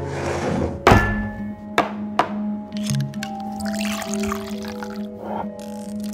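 Soft held music under drink being served: a hard thunk about a second in, two sharp clinks shortly after, then liquor pouring into a glass.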